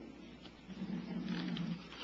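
A man's voice, faint, holding one drawn-out sound for about a second in the middle: a hesitation in his talk.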